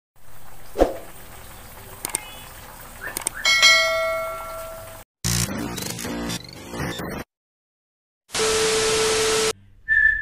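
Edited intro sound effects for a channel logo: a bell-like chime rings out about three and a half seconds in. It is followed by a short electronic glitch sting, a second of silence, and a burst of static hiss with a steady tone near the end.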